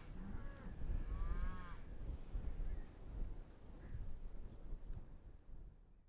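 A cow mooing once, faintly, about a second in, over a low rumble of wind on the microphone.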